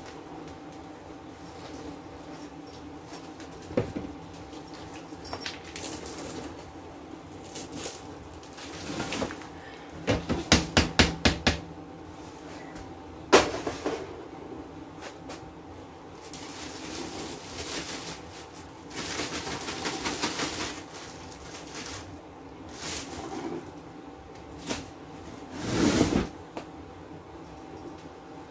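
Dishes and cookware clattering and knocking as they are handled. There is a quick run of knocks about ten seconds in, a sharp knock just after, a stretch of rattling around twenty seconds, and a heavier clunk near the end.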